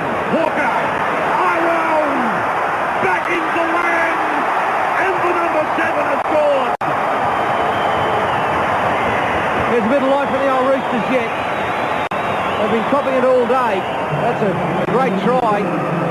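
Rugby league stadium crowd on an old television broadcast: a steady din of many voices with individual shouts rising out of it. The sound cuts out for an instant about seven seconds in.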